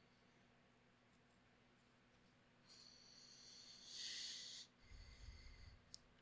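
A man's breathing close to the microphone: near silence at first, then a faint, drawn-out breath about three seconds in, followed by a shorter breath with a low puff near the end.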